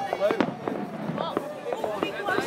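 Aerial fireworks bursting, with one sharp bang about half a second in, under people talking.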